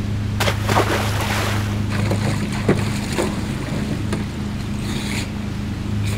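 A motor cruiser passes at speed: a steady low engine drone, with water splashing and rushing as its wake breaks against a small boat, heaviest in the first two seconds.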